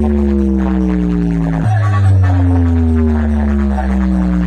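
Loud sound-check music played through a large DJ sound system: a heavy, steady bass drone under a tone that slides down in pitch and starts over every few seconds, restarting once about a second and a half in.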